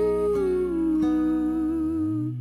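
A male voice holds one long hummed note that slides down about half a second in, over fingerpicked acoustic guitar and a sustained low accompaniment.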